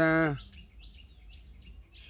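Faint small birds chirping in a series of short high calls, a few a second, after a man's drawn-out spoken syllable at the very start.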